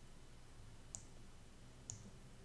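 Two faint, short clicks about a second apart over near silence, from a computer mouse.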